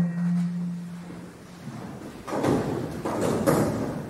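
A low held musical note dies away over the first second and a half. It is followed by a couple of seconds of shuffling, scraping and rustling as two players sit down together at a keyboard bench.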